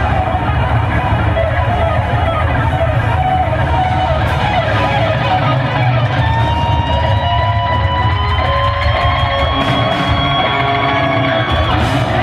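Heavy metal band playing live: distorted electric guitars, bass and drums, loud and continuous. From about six seconds in, a long held note rises slowly in pitch over the band.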